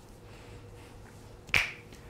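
A single sharp click about one and a half seconds in, over faint room noise.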